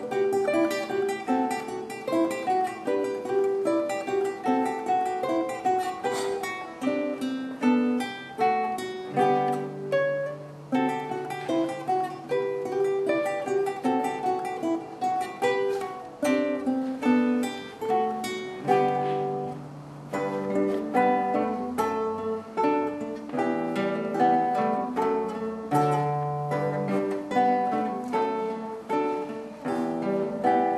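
Two classical guitars playing a duet together: a plucked melody over chords, with a few longer low bass notes along the way.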